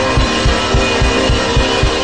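Gospel worship band playing an instrumental passage: a steady low drum beat under sustained chords.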